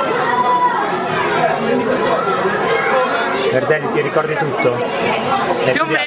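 Several boys' voices talking over one another in lively chatter, with no single voice standing out.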